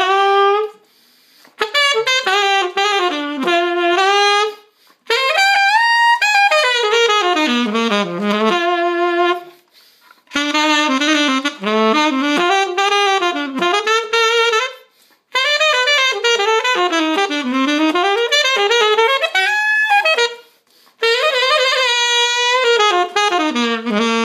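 Alto saxophone with an Oleg mouthpiece played solo: melodic phrases of notes climbing and falling in runs, separated by short pauses for breath about every four to five seconds.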